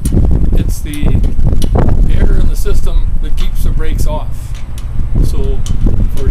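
A man's voice talking in broken phrases over a heavy, uneven low rumble of wind buffeting the microphone.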